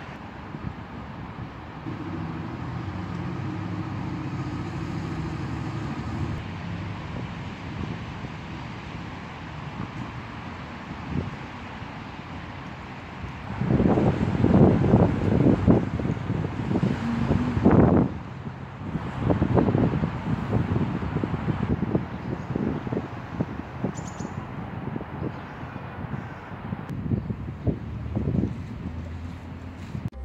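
Street ambience: a motor vehicle's engine hum rises about two seconds in and holds for about four seconds, then from about halfway on wind buffets the microphone in loud, irregular low rumbling gusts.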